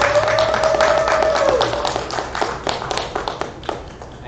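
Wedding guests clapping, dense at first and thinning out toward the end. Over the first part, one long held high note that falls away about a second and a half in.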